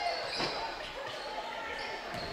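Basketball dribbled on a wooden gym floor: a couple of bounces about half a second apart, over faint background chatter in the gym.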